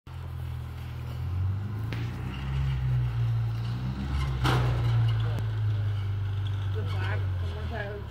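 Off-road vehicle's engine running steadily at low revs as it crawls down a rocky trail, with a sharp knock about halfway through.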